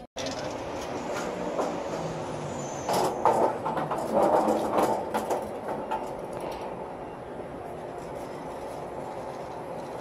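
Metal platform hand truck rattling over pavement, with a run of louder clatters between about three and five seconds in, then a steadier background hum.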